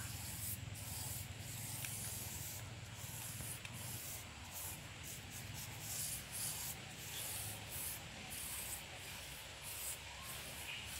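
Bristle paintbrush scrubbing a diesel-based wood treatment onto a rough timber plank in repeated back-and-forth strokes, a dry hissing scrape with short breaks between strokes.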